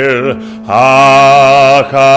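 A man chanting a Hebrew prayer in cantorial style, holding long notes with a wavering vibrato. The voice drops away for a breath about a third of a second in and breaks off briefly just before the end.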